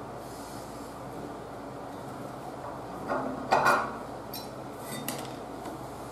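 A few light metallic clinks and scrapes of a steel spud wrench and pipe wrench being handled and drawn out of a radiator's brass valve spud. The main cluster comes about halfway in, with a couple of lighter ticks after it.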